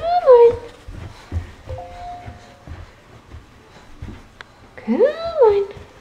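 A toddler's two high-pitched wordless squeals, one at the start and one near the end, each rising and then falling in pitch, with soft thumps as she climbs carpeted stairs.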